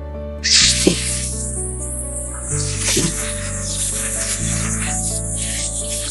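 A cordless electric nail drill running, a high steady hiss that starts about half a second in, over background music.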